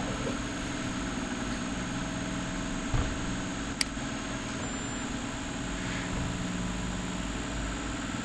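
Steady low background hum with no speech, broken by a soft thump about three seconds in and a short sharp click just before four seconds.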